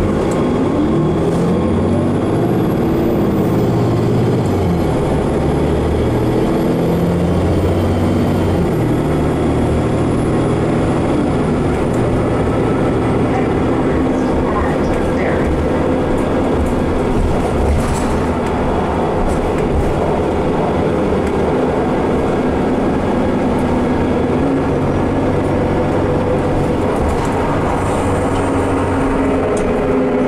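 Inside a 2015 Nova Bus LFS city bus on the move: engine and drivetrain noise rises in pitch as the bus pulls away over the first several seconds, then runs steadily along with road noise. A thin high whine glides along above it for the first several seconds.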